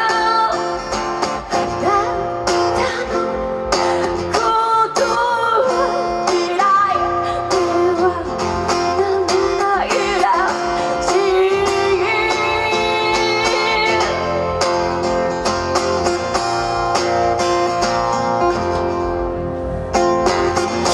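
A live song: a steel-string acoustic guitar strummed steadily, with a woman's voice singing over it through the sound system.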